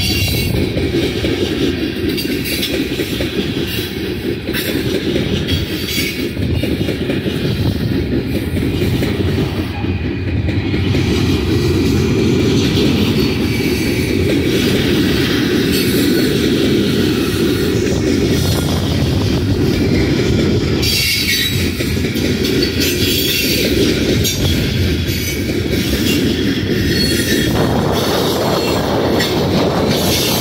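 Freight train of coal gondola cars rolling past: a steady low rumble of steel wheels on rail, with intermittent high screeching from the wheels.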